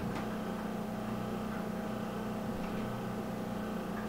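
Room tone: a steady low electrical or mechanical hum with no other events.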